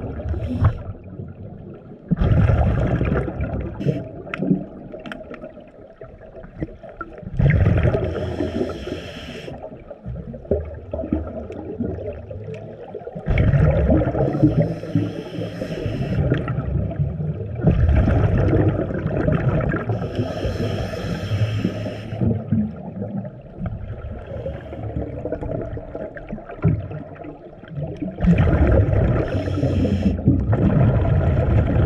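Scuba diver breathing through a regulator, heard underwater: loud bursts of hissing and bubbling gurgle about every five seconds, with quieter stretches between.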